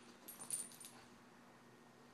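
Greyhound and poodle play-wrestling on a couch: a brief faint scuffle with a light jingle about half a second in, then only a faint steady hum.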